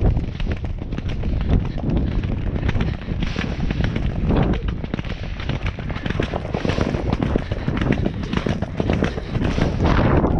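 Hoofbeats of a grey horse galloping on turf, heard from the saddle as a fast run of thuds, with a heavy rumble of wind on the microphone underneath.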